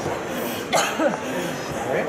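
People's voices in the hall, with a short cough about three quarters of a second in.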